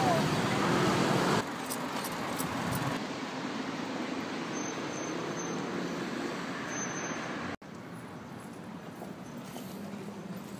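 Street noise of traffic and indistinct voices. It changes abruptly twice early on, and there is a brief dropout later, as separate recordings are cut together.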